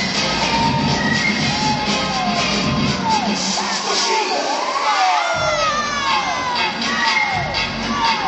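Crowd cheering and shouting over dance music. The music's bass drops out for a couple of seconds around the middle, while the whoops and shouts continue.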